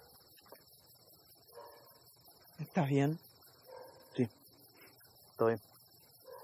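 Crickets chirping steadily, with three short, loud vocal sounds from a person about three, four and five and a half seconds in; these vocal sounds are the loudest events.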